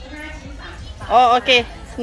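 Speech: a woman speaking Thai, with two short, loud, pitched words in the second half.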